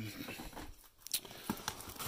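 Handling noise: rustling and crinkling of plastic packaging, with a few light knocks as items are picked up and moved.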